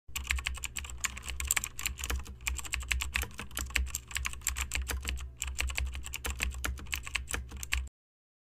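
Typing sound effect: fast, irregular keyboard clicks over a steady low hum, matching the title text appearing letter by letter. It cuts off suddenly just before the end.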